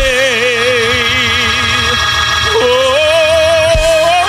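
A man singing long wordless notes with a wide vibrato, moving up to a second, higher held note about halfway through, over sustained organ chords.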